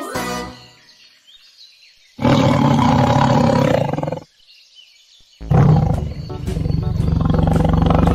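A big cat roaring, a cartoon sound effect: a fading roar at the start, a loud one about two seconds in, and another from about five and a half seconds on, with quieter gaps between.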